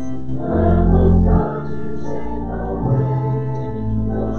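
Church organ playing slow, sustained chords over a deep bass line, the chords changing about once a second and loudest about a second in.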